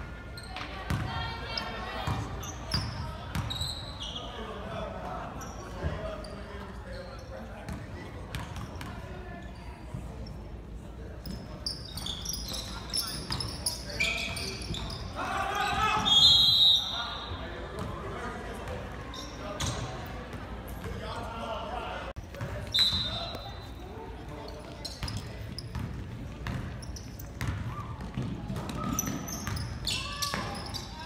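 A basketball bouncing and being dribbled on a hardwood gym floor, with voices and shouts echoing in the gymnasium. A few short high squeaks come through, the loudest about halfway through.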